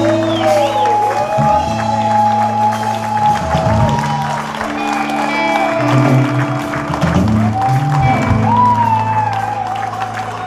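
Live electric blues band playing: electric guitars and drums, with an amplified harmonica cupped against the vocal mic holding long notes and bending them up and down.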